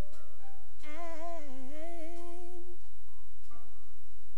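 A woman's solo voice hums a wordless gospel-style line through a microphone. About a second in she holds one long note that bends and wavers, then stops near the three-second mark.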